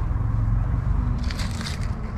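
Apple leaves and twigs rustling and crackling against a hand and the camera as it pushes in among the branches, with a cluster of crackles a little past the middle, over a steady low rumble on the microphone.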